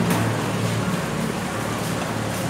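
Steady low rumble and hiss of background noise in an open-air eatery, with a faint click near the start.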